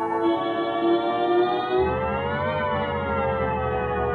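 Electronic music: a sustained synthesizer drone of many stacked tones that slowly glides up in pitch, peaks a little past halfway, then slides back down. A low bass rumble comes in just before the midpoint.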